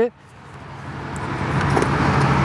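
A road vehicle approaching, its noise swelling steadily from faint to loud over about two seconds.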